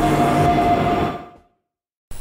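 Logo-animation intro sound effect: a dense noisy sound with a few steady held tones, fading out a little after a second in and dropping to complete silence.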